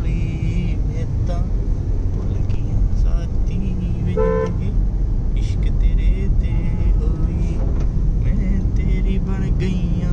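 Road traffic heard from inside a moving car: a steady low rumble of engine and tyres, with one short vehicle-horn toot about four seconds in.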